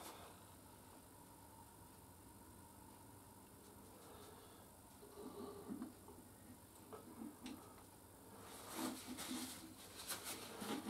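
Mostly near silence while engine oil is poured from a plastic jug into the engine's filler, with a few faint glugs about halfway through and faint rustling near the end.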